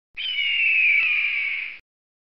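A bird's screeching cry used as a sound effect: one long call that falls slowly in pitch.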